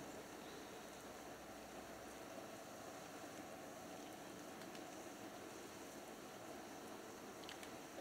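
Wood fire catching in a metal fire pit, lit from fire-starter blocks: a faint steady hiss with a few light crackles.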